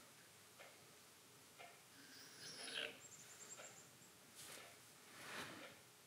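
Near silence, with a few faint, short rubbing sounds as the end of a steel pin is stoned flat on a Norton sharpening stone to take off a Sharpie mark, the strongest about two and a half seconds in.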